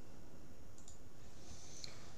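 Steady low background hiss and hum of the recording, with two faint short clicks, one about a second in and one near the end.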